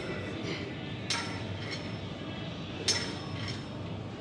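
Two sharp metallic clinks from a cable pulldown machine's hardware, about a second in and again near three seconds in, over a steady low hum.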